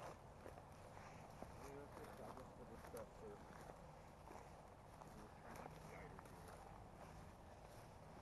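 Near silence with faint, scattered footsteps and small crunches underfoot, as of walking over a woodland floor.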